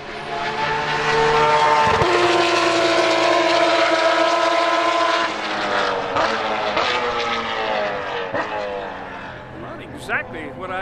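Engines droning, several steady pitched tones at once, easing slightly lower in pitch over the second half.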